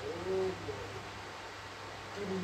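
A bird's low cooing call: a short, two-part coo in the first second, over a steady low hum.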